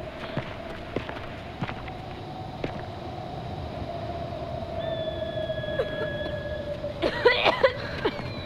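Film background score holding one long note over faint background noise, with scattered light clicks. Near the end comes a short, louder cluster of sharp, bending sounds.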